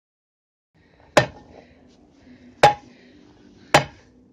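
Three sharp metallic hammer strikes on a steel angle-iron ground rod being driven into the soil, a second or so apart, the second one ringing briefly.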